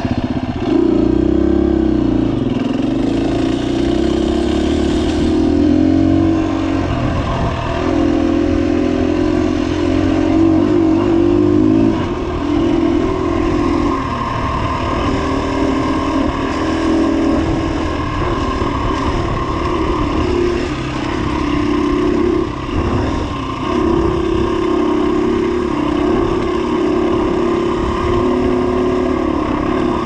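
2017 KTM 250 EXC-F dirt bike's single-cylinder four-stroke engine under way on a trail. The revs rise and fall in short pulls, with a brief drop in throttle every few seconds.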